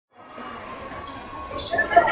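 Gymnasium crowd noise at a basketball game that fades in after a brief silence and grows louder, with a basketball bouncing on the hardwood court near the end.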